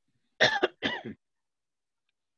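A person clearing their throat: two short, rough bursts close together, about half a second in.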